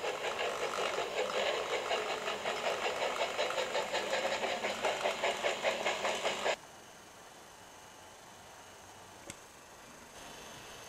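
Electric motor and wheels of a small model railway locomotive running along the track with a steady whirring buzz, which stops abruptly about six and a half seconds in. A single small click follows near the end.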